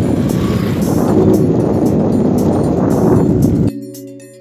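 Loud, rough rumbling noise of riding over a dirt track, with wind buffeting the microphone. It cuts off abruptly about three and a half seconds in, leaving quieter background music with steady tones.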